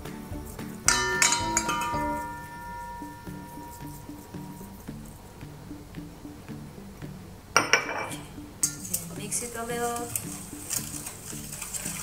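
A small dish strikes the rim of a stainless steel mixing bowl about a second in, leaving the bowl ringing. In the second half a wire whisk clinks and scrapes around the bowl. Background music plays throughout.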